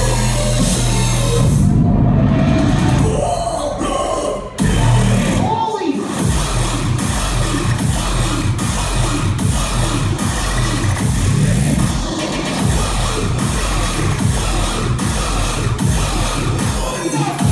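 Loud dubstep DJ set played over a club sound system. About two seconds in the top end drops out for a short break; near five seconds a deep bass sound sweeps downward in pitch, and then the beat comes back in with steady regular hits.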